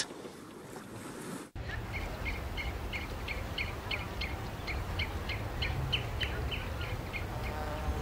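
Outdoor waterside ambience starting about a second and a half in: a steady low wind-like rumble, with a bird chirping quickly, about four short chirps a second, for several seconds until near the end.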